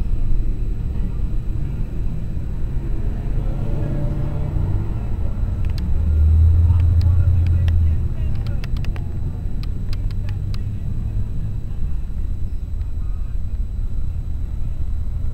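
City street traffic: a steady low rumble of cars going by, louder for a couple of seconds about six to eight seconds in, with a few light clicks in the middle.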